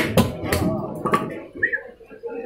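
Several sharp chopping knocks on a wooden block where a large fish is being cut, a few tenths of a second to half a second apart in the first second and a half, with voices alongside.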